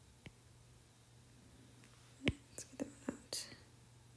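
A few soft clicks, the sharpest about two seconds in, followed by several short, soft breathy sounds like faint whispering, over a low steady room hum.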